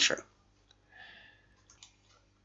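Mostly quiet, with a few faint computer mouse clicks near the end as a PDF document is paged through.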